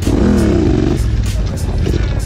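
Yamaha Raptor quad's engine running, rising and falling in pitch in the first second, under background music with a steady beat.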